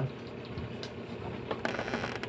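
Mechanical clicking: a few scattered clicks, then a quick run of rapid clicks near the end.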